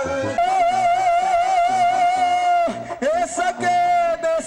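A man singing a ranchera into a microphone. He holds one long note with a wide, even vibrato for about two seconds, then swoops up into a new phrase.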